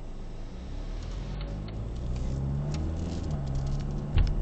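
Car engine and road noise heard from inside the cabin. About a second in, the engine note climbs a little as the car picks up speed, with a few faint clicks.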